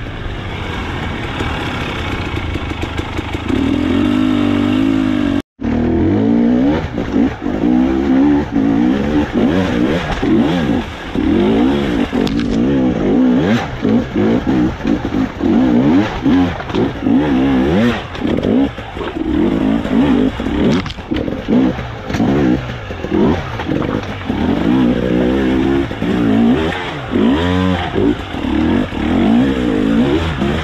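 Off-road motorcycle engine ridden hard over rough ground, revved up and down in quick, repeated throttle bursts as the bike climbs over rocks. The sound drops out for an instant about five and a half seconds in.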